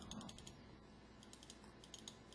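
Faint computer mouse clicks, a few quick groups of them over near silence.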